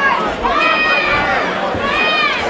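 Boxing crowd shouting, several voices calling out over one another above a general hubbub.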